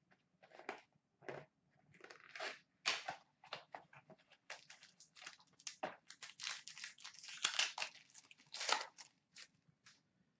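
A trading-card pack being opened and its cards handled: irregular crinkling and rustling of the wrapper and card stock sliding against each other, busiest about six to nine seconds in.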